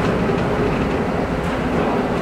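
Steady rumble and rattle of a city bus in motion, heard from inside the passenger cabin.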